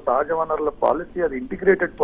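Speech only: a voice talking over a telephone line, sounding thin and narrow-band.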